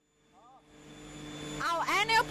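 Steady machinery hum of an aluminium extrusion plant, a few constant tones over a hiss, fading in from silence and growing louder; a woman starts speaking near the end.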